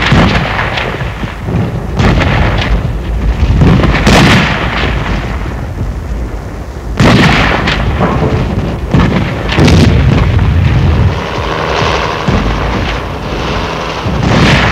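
Combat gunfire and explosions of a mock street-fighting exercise: a sudden loud report every two seconds or so over a continuous deep rumble.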